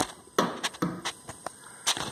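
Handling noise of a steel machete: a run of sharp clicks and knocks at uneven intervals as the blade is picked up and turned, the loudest one near the start and another just before the end.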